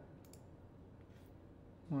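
A couple of quick, faint clicks near the start and one more about a second later, from the computer being worked as a highlighted block of code is copied.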